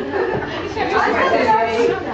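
Several people talking over one another: lively group chatter with no single clear voice.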